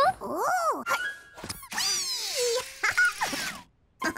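Wordless vocal sounds from cartoon animal characters: a few short cries that slide up and down in pitch, with a brief clink about a second and a half in.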